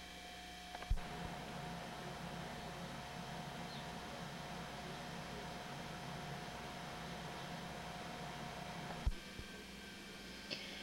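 Faint steady hiss with a low hum from a home camcorder's recording, broken by a short thump about a second in and another near the end, where the recording cuts between shots.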